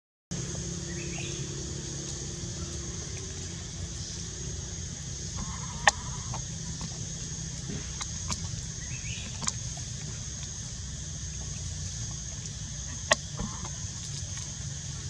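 Outdoor forest ambience: a steady high insect drone with a few faint short bird calls, and three sharp clicks spread through it.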